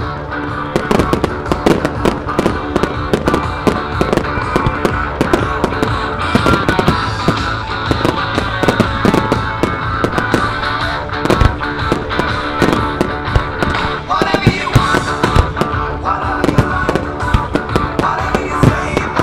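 Fireworks bursting: a dense, uneven run of sharp bangs and crackles from aerial shells, heard over loud music.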